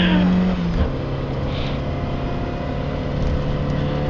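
Rally car engine heard from inside the cabin, running at a steady note that drops to lower revs a little under a second in and then holds steady.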